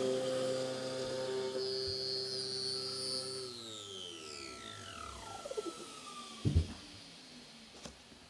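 Router on a router table running with a steady whine, then switched off about three seconds in, its pitch falling away as the motor spins down over about two seconds. A single knock follows about six and a half seconds in.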